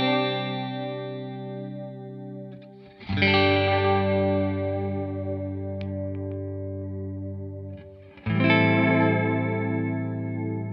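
Electric guitar chords played through a stereo ping-pong delay on a Pigtronix Echolution 2, repeats turned up, so each chord rings on in bouncing echoes. A new chord is struck about three seconds in and again about eight seconds in. The delay repeats themselves are modulated, giving a chorus-like shimmer with no chorus pedal on.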